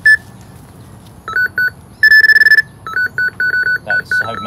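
Electronic carp bite alarms on a rod pod beeping in two different pitches: a single beep, then a couple of beeps, a held tone about halfway through, then a fast run of beeps. The beeping comes from the lines shimmering with fish moving straight over the bait.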